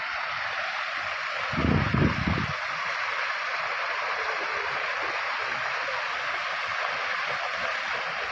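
Artificial rock waterfall pouring steadily into a shallow pool, an even rush of falling water. A brief louder low rumble comes about a second and a half in.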